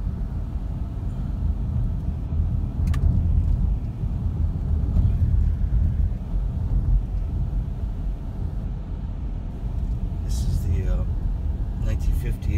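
Car cabin noise while driving on a paved road: a steady low rumble of tyres and engine, with a single click about three seconds in.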